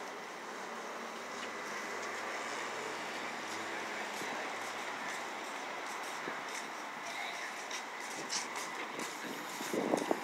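Steady street traffic noise, a wash of passing vehicles that swells a little early on and holds. Scattered clicks and a brief louder knock come near the end.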